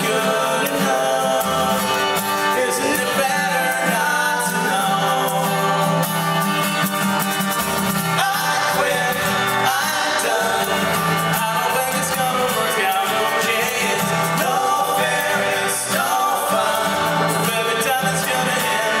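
Acoustic guitar strumming with three men singing together at microphones, a live folk-pop song.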